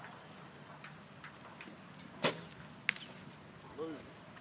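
Recurve bow shot: a single sharp twang of the string as the arrow is loosed about two seconds in, followed about half a second later by a fainter, sharp click of the arrow striking the target.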